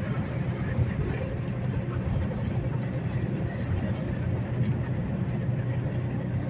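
Inside a semi-truck cab at highway speed: the truck's steady low engine drone mixed with tyre and road noise on rough, patched interstate pavement.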